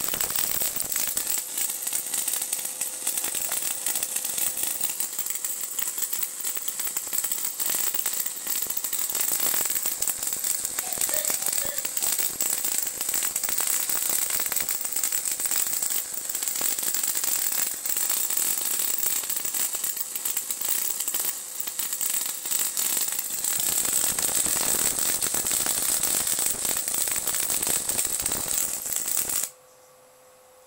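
High-voltage arc crackling from a 555-timer-driven flyback transformer, a continuous dense crackle that cuts off suddenly near the end.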